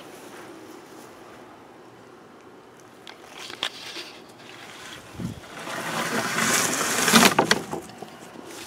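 A person moving about outdoors: a few light clicks and a dull thud, then a louder rushing rustle for about two seconds near the end, as of leaves or clothing brushing close to the microphone.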